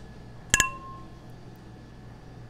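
Two stemmed beer glasses clinked together in a toast: one sharp clink about half a second in, ringing briefly with a clear tone.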